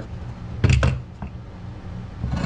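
Two sharp knocks close together, a little over half a second in, as an angle grinder and a sheet of aluminium diamond plate are handled and set down on a workbench. The grinder is not running.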